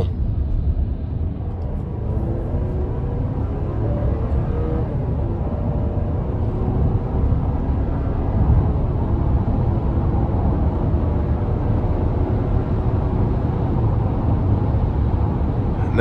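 2024 Chevrolet Traverse Z71's 2.5-litre turbocharged four-cylinder, heard from inside the cabin, pulling hard at part throttle while merging onto the interstate. Engine tones rise over the first few seconds, then settle into a steady drone over low road rumble as speed builds to highway pace.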